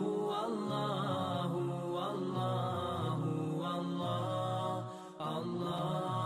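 Background music: a single voice chanting long, sliding notes, with a brief pause about five seconds in.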